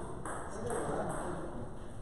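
Table tennis ball being struck and bouncing on the table as a rally ends, with people talking in the hall.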